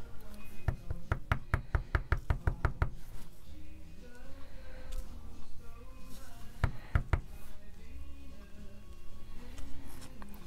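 A clear acrylic stamp block carrying a rubber stamp knocks against the desk in a quick run of about a dozen sharp taps, roughly six a second, then twice more near the middle, over faint background music.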